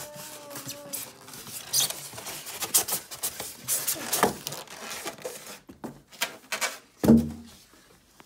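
Foam packing insert rubbing and scraping against the cardboard box in irregular strokes as it is lifted out, with a louder burst about seven seconds in.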